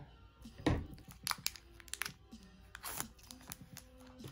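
Shiny foil booster-pack wrapper crinkling in several sharp crackles as it is pulled open and the cards are drawn out, over faint background music.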